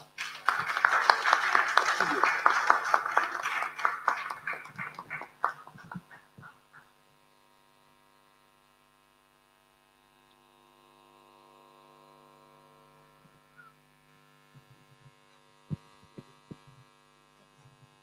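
Audience applause and cheering that dies away to a few last separate claps about six seconds in. After that comes a faint steady electrical hum with a few soft knocks near the end.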